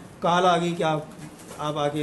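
A man's voice speaking in short phrases.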